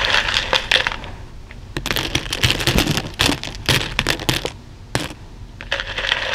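Plastic buttons, beads and sequins clicking and rattling against each other as a hand stirs and sifts them in a plastic bowl lined with cloth. A short rattle at the start, then a longer run of clicking from about two seconds in to about four and a half, and more again near the end.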